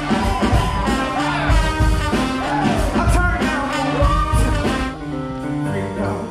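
Live pop-rock band music with male lead vocals and a steady beat; about five seconds in the singing stops, leaving held keyboard chords.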